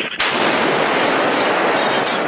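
A sudden loud bang about a fifth of a second in, followed by a steady, loud rushing hiss of noise.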